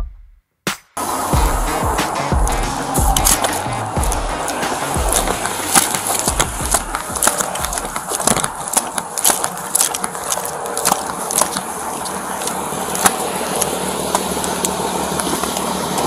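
Body-worn camera microphone picking up an officer's footsteps and gear and clothing knocking and rubbing as he walks, with many sharp clicks over a steady hiss. The low thumps are heaviest in the first few seconds.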